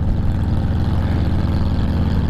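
Harley-Davidson touring motorcycle's V-twin engine running steadily at cruising speed, heard from on the bike with constant wind and road rush.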